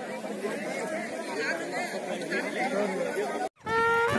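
Several people's voices chattering at once. Near the end they cut off abruptly and music begins.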